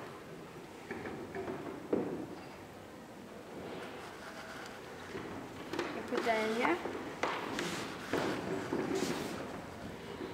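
A few light knocks and clatters as small plastic and glass containers are handled on a table, the clearest about two seconds in, over the steady background murmur of a large hall.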